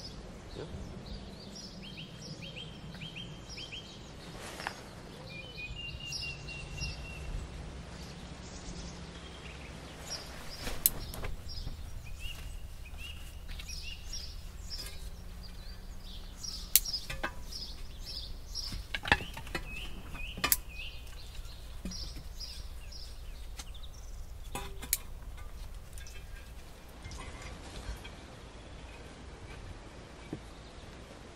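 Woodland ambience: small birds chirping in short repeated phrases over a low steady rumble, with a few sharp snaps or knocks in the middle stretch.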